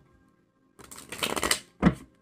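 A deck of tarot cards being shuffled by hand: a quick crackling riffle of cards lasting under a second, then a single thump.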